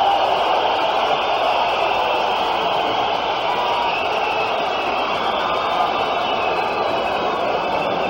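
A large arena crowd cheering, a dense steady wash of many voices holding at one level throughout.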